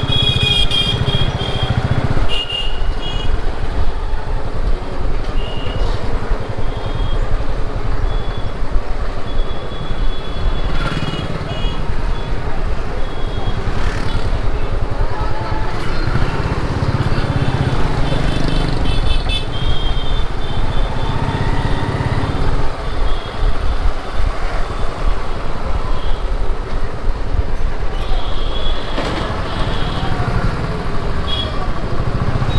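Motorcycle engines running in slow street traffic, with short horn toots from passing vehicles sounding again and again.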